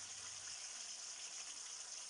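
Faint, steady sizzle of sunflower oil heating in an aluminium kadai under a marinated whole chicken.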